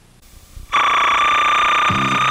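A loud, steady high synthesizer note comes in about three-quarters of a second in, opening a new-wave rock song, and the band's bass notes come in under it near the end.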